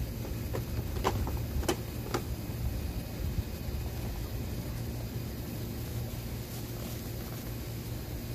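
A few sharp plastic clicks in the first couple of seconds as a plastic seed-packet organizer and seed packets are handled, over a steady low background rumble.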